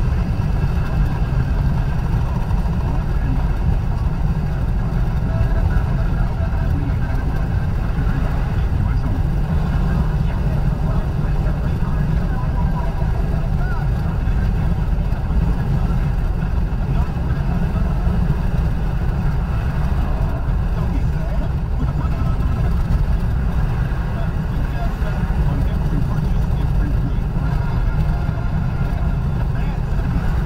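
Steady road and engine noise heard inside a car's cabin at freeway speed, a constant low rumble with no change in pace.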